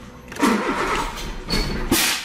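Starter motor cranking a Volkswagen Polo 4's engine in two bursts, the first and loudest about half a second in and the second near the end. The engine does not keep running: the fault is an engine that starts and then stalls.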